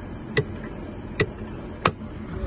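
Three sharp plastic clicks, spaced under a second apart, as a hand works the sill trim and carpet edge in a car's driver's footwell.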